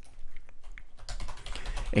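Computer keyboard typing: an irregular run of separate key clicks.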